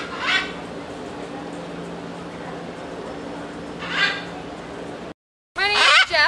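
Blue-and-gold macaw giving two short, harsh squawks about four seconds apart, over a steady low hum. Near the end the sound cuts out briefly and a woman starts speaking.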